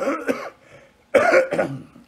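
A man coughing into his fist, twice: a cough that trails off just after the start, then a second short cough about a second in.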